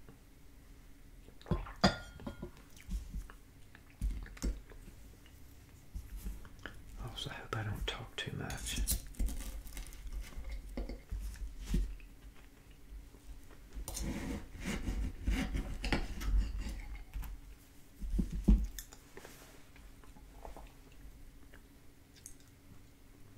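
A china teacup set down on its saucer with a clink, then a metal fork cutting a flaky chocolate croissant on a china plate. Repeated scrapes and clinks of fork on porcelain come in two long bouts, with chewing between.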